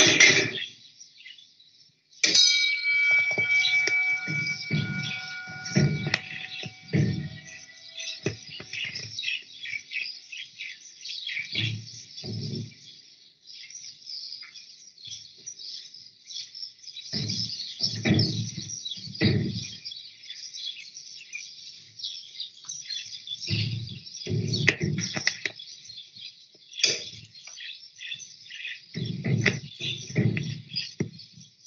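Many small birds chirping continuously, with scattered low sounds coming and going. About two seconds in, a ringing tone sets in sharply and fades over several seconds.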